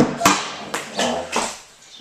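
A sharp click, then footsteps crunching over broken glass and debris on a bare floor, several steps fading out after about a second and a half.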